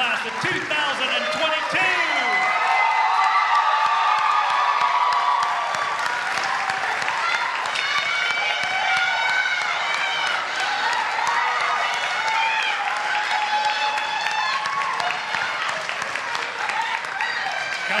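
Audience applauding in an auditorium, with shouts and cheers from the crowd mixed in.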